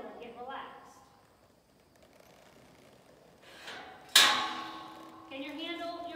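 A single sharp metal clang from a steel pipe gate or its latch, about four seconds in, ringing on briefly as it dies away. A woman's voice talks before and after it.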